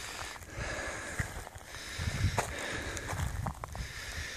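Slow footsteps on the dry, cracked mud of a drained pond bed, a few soft steps about a second apart, over a low, uneven wind rumble on the microphone.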